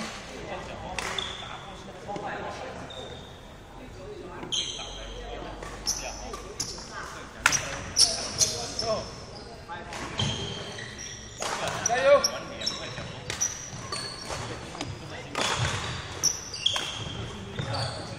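Badminton rally: sharp smacks of rackets hitting the shuttlecock, some in quick pairs, and sneakers squeaking in short high squeals on the wooden court floor.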